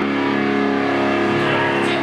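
Distorted electric guitars and bass holding a sustained, ringing chord at a live rock show, steady with few drum hits.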